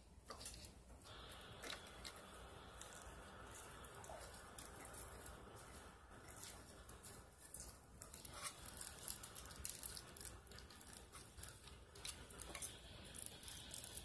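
Faint rustling and small scratchy clicks of pet rats moving about in a wire cage, busier in the second half.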